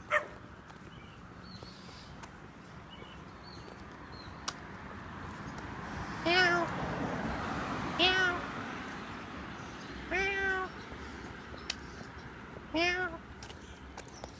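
A cat meowing four times, each meow short and spaced about two seconds apart.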